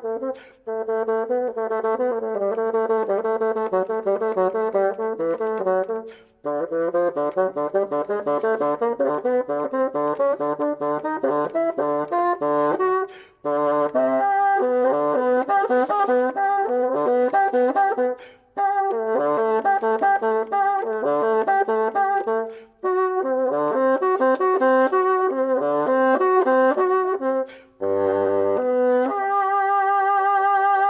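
A bassoon playing fast runs of notes in phrases, broken by short pauses for breath every few seconds, with a brief low note near the end.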